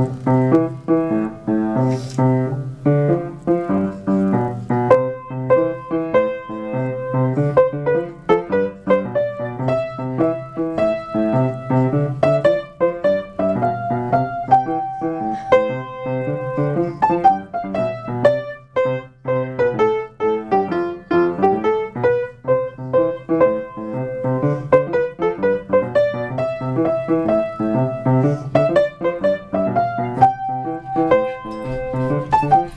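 Two players playing a simple four-hand piano duet: a repeating low bass pattern under a higher melody, played steadily and continuously.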